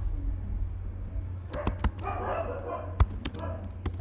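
Scattered keystrokes on a computer keyboard: about half a dozen sharp clicks in the second half, over a steady low electrical hum.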